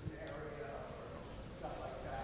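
A person's faint voice, a drawn-out hum or held 'um' at a low level, heard in a pause between answers.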